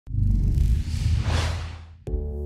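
Whoosh sound effect from an animated logo intro: a deep rumble under a rushing hiss that swells and then fades away towards the end.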